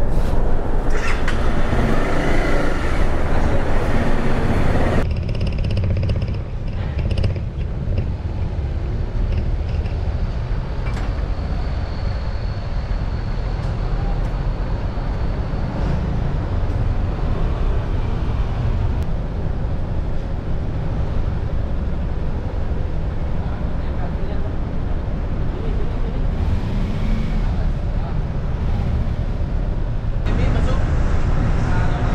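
Steady low engine rumble on a ferry's vehicle deck, with indistinct voices during the first few seconds.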